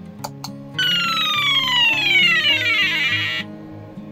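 Two quick clicks, then the game's buzzer plays a loud electronic tone that glides steadily down in pitch for about two and a half seconds and cuts off suddenly. Soft background guitar music runs underneath.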